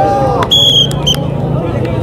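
Crowd hubbub around a kabaddi field, cut by a short shrill whistle blast about half a second in and a brief second pip just after, as the tackle on a raid ends.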